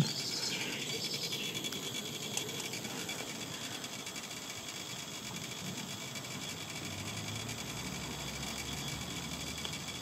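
Small electric draught fan sitting on top of a coal-fired live-steam garden-railway locomotive, running steadily with a faint high whine as it draws up the coal fire. The boiler has not yet raised steam pressure.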